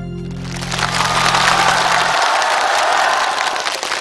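Studio audience applauding at the end of a song, rising about half a second in, over the song's last held low note, which cuts off about two seconds in.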